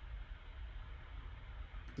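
Faint room tone: a low steady hum with a light even hiss, and no distinct event.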